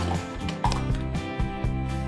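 Background music with a steady beat of about two beats a second over a sustained bass line.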